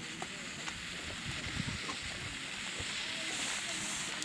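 Black Cat Tropical Thunder ground fountain firework burning, a steady hiss of spraying sparks that builds slightly toward the end.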